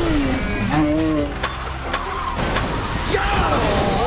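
Shouting voices over music, with three sharp cracks in the middle, about half a second apart.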